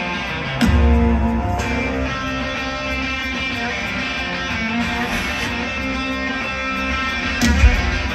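Live rock band playing a song intro: electric guitar notes ring out, a heavy bass swell comes in about half a second in, and drum hits crash in near the end.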